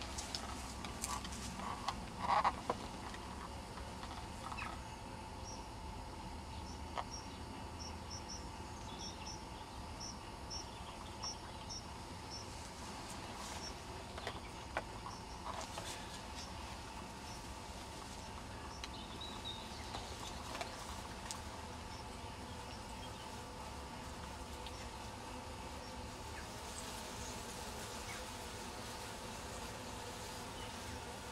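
Honey bees from an opened winter cluster giving a faint, steady hum. A few knocks from wooden hive parts being handled near the start, and a run of short, evenly spaced high chirps about a third of the way in.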